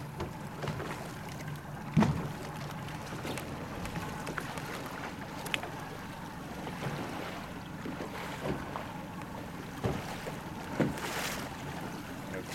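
A boat engine idling with a steady low hum, and a few knocks over it, the loudest about two seconds in.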